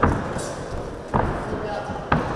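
Boxing gloves landing punches in an amateur boxing bout: two sharp thuds about a second apart, each with a short echo.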